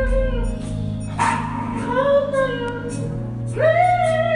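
Live southern gospel singing with band accompaniment of drums and keyboard, with steady sustained low notes under the voices. A loud held sung note comes in near the end.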